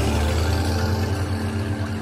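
A steady, low droning hum made of several held deep tones, easing off slightly toward the end.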